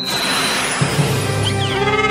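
A sudden crash-like cartoon sound effect at the very start that fades out over about a second and a half, with background music underneath.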